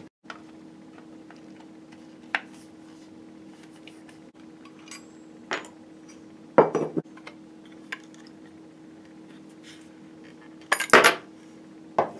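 Metal rifle fittings and hand tools clinking and clicking as they are handled and set down on a wooden workbench: a few scattered clicks, a short clatter a little past the middle, and the loudest clatter near the end. A steady low hum runs underneath.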